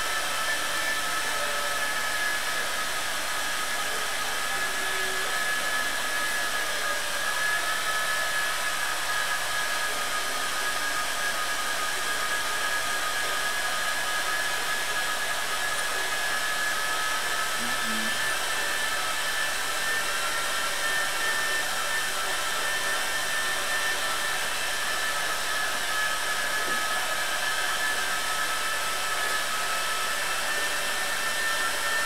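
Vertical milling machine running steadily, a constant motor and gear noise with a steady high whine.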